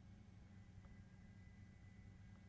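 Near silence: only a faint steady low hum.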